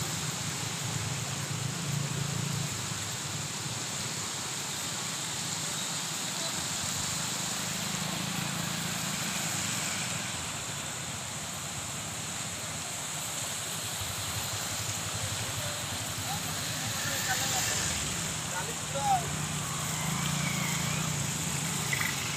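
Steady outdoor rushing noise with a few faint voices.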